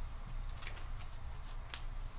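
Sheets of paper rustling as they are handled and leafed through, a few short crisp rustles, over a steady low room hum.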